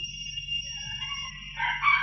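A faint, drawn-out bird call that rises and then holds for about a second, starting about halfway through, over the steady low hum of an old tape recording.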